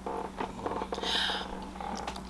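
Eating sounds close to the microphone: a fork clicking lightly and mouth noises as a forkful of pancake is taken, with a short hiss about a second in. A steady low electrical hum runs underneath.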